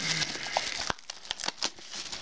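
Plastic shrink-wrap crinkling and crackling as it is pulled off a DVD box set, with one sharper snap a little under a second in.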